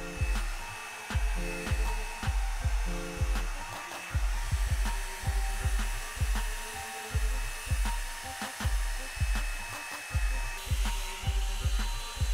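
Background music with a steady beat, about two beats a second, over the even rush of a Revlon One-Step blow-dryer brush running as it dries a section of hair.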